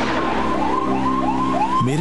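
An emergency-vehicle siren yelping, its pitch rising and falling about three times a second, over a steady music drone. A man's voice begins near the end.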